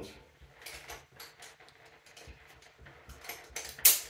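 Climbing hardware being handled: light clicks and clinks of a carabiner and rope lanyard, then one sharp metallic click near the end as the carabiner is clipped onto a harness D-ring.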